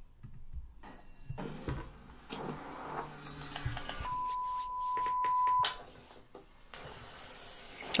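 Faint opening sounds of a pop music video playing through computer speakers: scattered clicks and low tones, with one steady beep-like tone held for about a second and a half midway.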